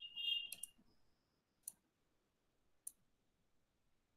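A high electronic beeping tone that ends about half a second in, followed by three faint, sharp computer mouse clicks about a second apart as files are opened to share a presentation.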